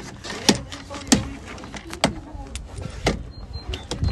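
Plastic trim clips popping loose as a plastic pry tool levers the armrest trim strip off a 2008 Mazda CX-9 door card: a series of sharp clicks, about one a second.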